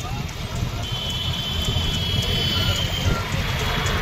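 A pack of motorcycles running together in a steady rumble of engines. A high held tone sounds over it from about one second in to near three seconds.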